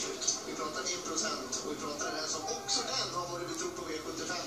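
Television race commentary heard from a TV set's speaker: a commentator's voice runs on steadily through the finish of a harness race.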